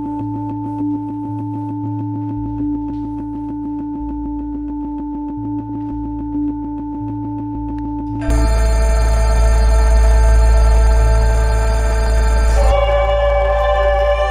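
Electronic music: two steady drone tones over a shifting low bass and a fast, even ticking pulse. About eight seconds in, a much louder, fuller chord of held synthesizer tones takes over.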